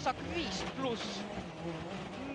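Onboard rally car audio: the engine running steadily at speed, with the co-driver's voice faintly calling pace notes over it.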